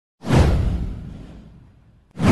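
Intro sound effect: a whoosh with a deep low rumble that starts suddenly a fraction of a second in and fades away over about a second and a half.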